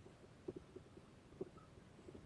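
Near silence: room tone with a few faint, soft clicks, the clearest about half a second in and near the end.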